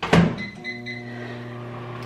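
Over-the-range microwave oven being started: the door shuts with a thunk, the keypad beeps a few times, and the oven begins running with a steady low hum, steaming vegetables in a little water.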